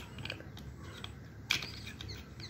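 Light clicks and taps of small plastic toy figures being handled and moved by hand, with one sharper click about one and a half seconds in.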